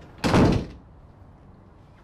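A wooden office door shutting with one heavy thud, about a quarter of a second in.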